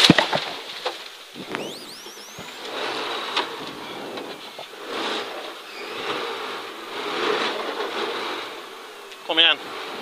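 Cabin noise of a 1983 Audi Quattro Group B rally car slowing to a stop, snow spraying against the body and windscreen, louder at first and then dropping to a lower, uneven rush. A brief rising whistle comes about a second and a half in, and a short voice near the end.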